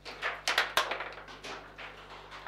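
Table football in play: a quick flurry of sharp clacks and knocks as the rod-mounted figures strike the ball and the rods jolt, thinning to a few scattered knocks after about a second.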